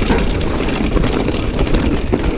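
Wind buffeting a GoPro's microphone while a mountain bike rolls fast over loose rocky gravel, with constant rumble from the tyres and small rattles and clicks from the bike.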